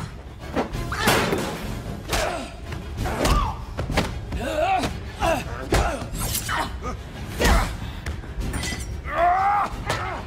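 Close-quarters fight sound effects: a rapid series of hits, thuds and smashes with glass shattering, and grunts and cries of effort, the loudest a drawn-out yell near the end. A music score plays underneath.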